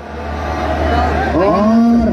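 A man's voice over a loudspeaker system, swelling from about a second in into a long drawn-out held note, with a steady low hum underneath.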